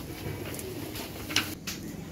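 A bird cooing low over steady background noise, with two short clicks about one and a half seconds in.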